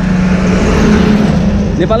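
Motor vehicle going by on the road: a steady engine hum with tyre and road noise that swells mid-way.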